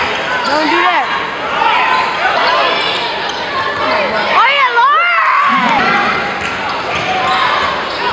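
Live audio of a basketball game on a hardwood court: sneakers squeak in short rising-and-falling chirps as players cut and stop, the ball is dribbled, and players and crowd are heard talking and calling. A loud cluster of squeaks comes about halfway through.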